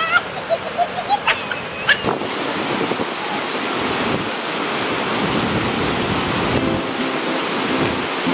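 Steady rushing roar of a tall waterfall's falling water, starting about two seconds in after a few brief voice sounds.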